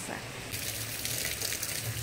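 Steady hiss of light rain falling on a flooded street, with runoff water running along it, starting about half a second in.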